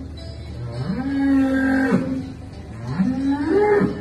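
A dairy calf mooing twice. The first long moo rises, holds steady and falls away. The second rises higher toward the end.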